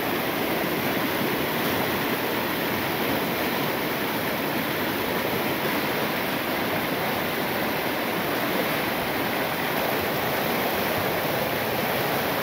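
River whitewater rushing over rocks at close range at a small waterfall's rapids: a loud, steady, unbroken rush of water.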